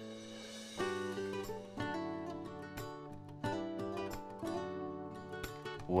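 Soft background music of plucked string notes, with a new note or chord about every second.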